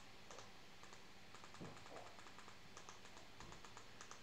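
Faint, rapid clicking of a TV remote's buttons being pressed over and over, several clicks a second, as a search is keyed in letter by letter on an on-screen keyboard.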